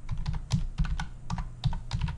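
Computer keyboard being typed on: a quick, uneven run of keystrokes.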